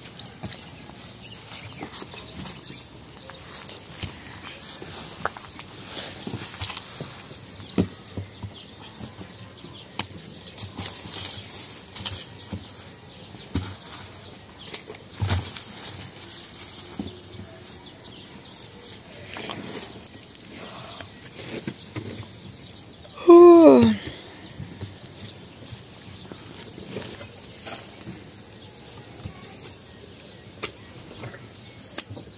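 Fired bricks knocking and scraping as they are stacked to close the fire hole of a burning brick kiln, heard as scattered light knocks throughout. About three-quarters of the way through comes one short, loud call whose pitch falls.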